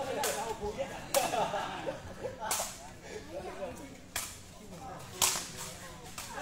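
A sepak takraw ball being kicked back and forth in a rally: five sharp smacks at irregular intervals of about one to one and a half seconds, with the louder hits about a second in and near the end.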